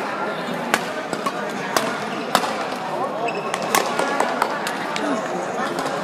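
Badminton rally: sharp racket strikes on the shuttlecock, roughly once a second, over a steady hubbub of voices in a large sports hall.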